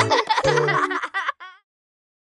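Closing bars of an upbeat animated children's song with baby and children's laughter and giggling over the music. The music stops about a second in, a short wavering giggle follows, then silence.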